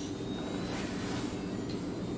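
Steady low background hum with faint steady tones and no distinct events.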